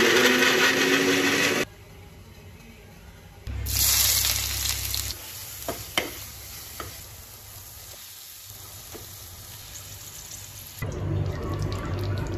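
An electric mixer grinder with a steel jar runs for about a second and a half and stops suddenly. Then food frying in a pan sizzles loudly for a moment and settles to a quieter sizzle, while a slotted metal spoon knocks and scrapes the pan a few times.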